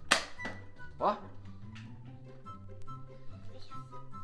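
A single shot from a Nerf Flipfury foam-dart blaster, one sharp pop right at the start, over background music with a steady bass line.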